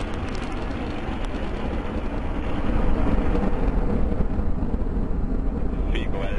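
Minotaur I rocket's solid-fuel motor during liftoff and climb: a steady, deep rumble of rocket exhaust that grows louder about three seconds in.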